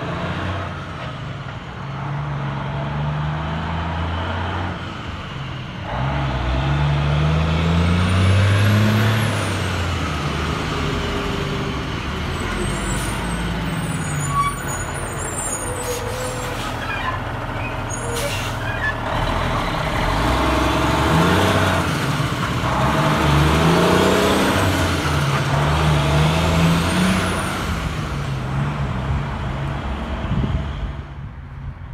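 Semi truck's diesel engine pulling away and accelerating, its pitch climbing and dropping back several times as it works up through the gears, with short sharp hisses of air in the middle as it passes close by.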